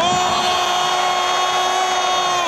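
A man's long, drawn-out goal shout held on one steady note, with crowd noise beneath; the note drops in pitch as it ends.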